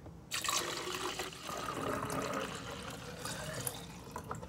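Orange Hi-C poured in a steady stream from a paper fast-food cup into a tall plastic cup, filling it. The pour starts about a third of a second in.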